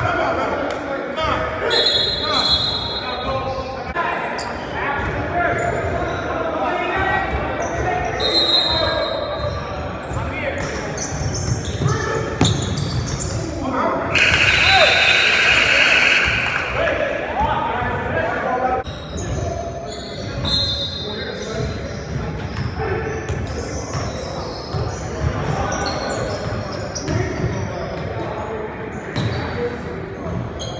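Basketball game on a hardwood gym court: a ball bouncing, with players' voices, echoing in the large hall. About halfway through there is a louder two-second rush of sound.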